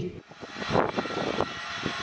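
The Archax, a 15-foot piloted robot, running with a steady mechanical whir that builds over the first second and then holds, with a faint high whine over it.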